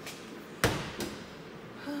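A refrigerator door shutting with a sharp thud about two-thirds of a second in, followed by a lighter knock.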